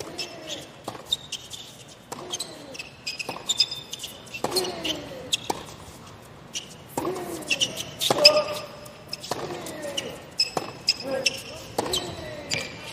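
A tennis rally on a hard court: the ball cracks off the rackets about once a second, most strikes followed by a short grunt that falls in pitch, with high squeaks of shoes on the court in between.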